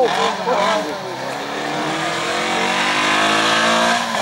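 Race car engine working through a cone slalom. The revs rise and fall quickly in the first second. From about a second in, the pitch climbs steadily under full throttle.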